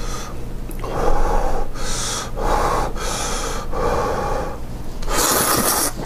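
A person slurping Neoguri instant ramyeon noodles: a series of about five rough, airy slurps, the loudest and longest near the end.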